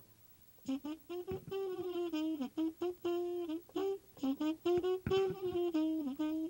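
A solo jazz horn playing an unaccompanied melodic phrase of short and held notes, starting about half a second in after near silence.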